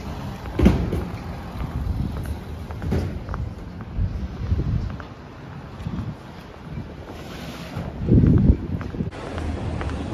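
Wind buffeting the microphone over city street noise, with a louder gust about half a second in and another near the end.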